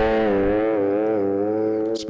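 Electric guitar holding a single bent note, sustained with an even vibrato that slowly fades.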